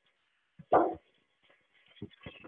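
Tri Tool 608SB clamshell lathe running faintly with a thin steady whine, its rotating head finishing the sever-and-bevel cut through an 8-inch tube, with a few faint low knocks. A short spoken word is the loudest sound, about a second in.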